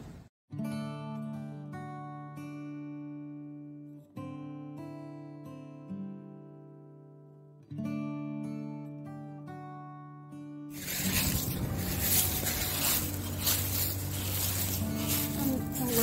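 Background acoustic guitar music: three plucked chords about three and a half seconds apart, each left ringing out. About eleven seconds in it gives way to loud rustling, crackling noise.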